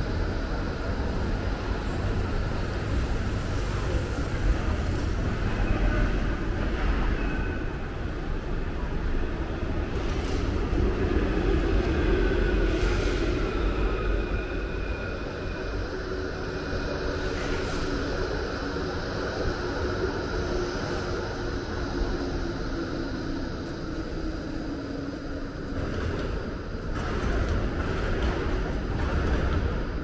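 City street traffic on a tram route: a steady low rumble of passing cars and trams, with faint whines that slide slowly in pitch.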